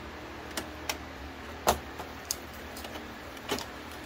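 Canon Pixma PRO-200 photo printer initializing after power-on: a steady motor hum with several sharp clicks as the print-head carriage moves toward its home position.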